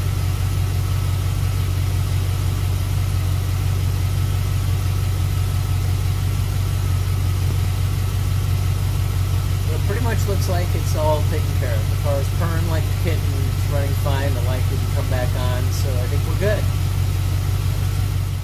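A C4 Corvette V8 idling steadily, a low even hum with no revving.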